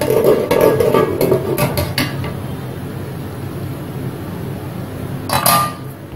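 Metal clinks and clatter of a pressure cooker's whistle weight being fitted onto the lid's steam vent, with one loud sharp clatter near the end over a steady hiss.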